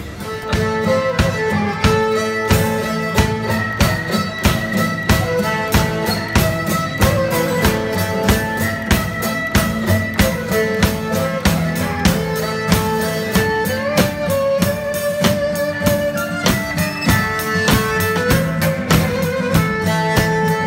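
Live fiddle, acoustic guitar and drum kit playing a lively dance tune, the fiddle carrying the melody over strummed guitar chords and a quick, steady drum beat.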